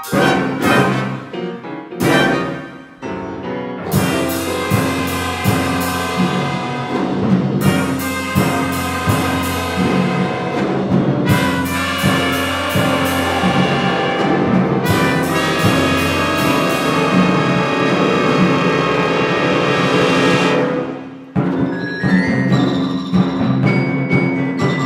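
Wind band playing loudly: a few sharp accented chords in the first four seconds, then long held full-band chords, which break off about 21 seconds in before a lighter passage carries on.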